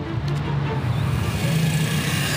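Honda postie bike's small single-cylinder engine running as the bike is ridden, with background music underneath.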